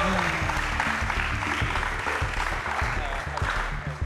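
Studio audience applauding over a background music bed, the clapping dying down toward the end.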